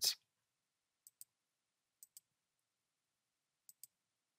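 Three faint computer mouse clicks against near silence, each a quick double tick of button press and release, spaced unevenly over a few seconds.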